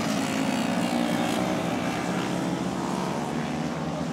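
Small 70 cc racing motorcycle engines running at speed as the bikes pass along the track, a steady buzzing engine note that dips slightly in pitch early on as the nearest bike goes by.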